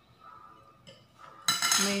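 Faint taps of a fork against a plate, then about one and a half seconds in a sudden loud, ringing clink of metal cutlery set down on the plate.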